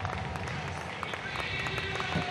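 Stadium crowd ambience: a steady hum of many distant voices with scattered single claps and a faint steady tone underneath.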